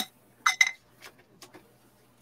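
Two quick metallic clinks about half a second in, then a few faint ticks and knocks: metal parts and hand tools being handled while taking apart an old treadle sewing machine table.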